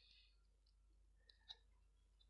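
Near silence, with faint marker-pen strokes on paper and a few small clicks; the sharpest click comes about one and a half seconds in.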